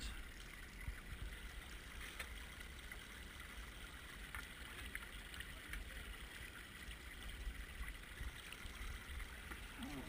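Shallow stony burn running: a faint, steady rush of water over stones, with a few faint ticks.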